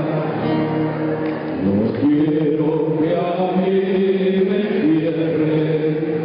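Male voices singing a slow song together in harmony, holding long notes, to acoustic guitar accompaniment, through a live hall sound system.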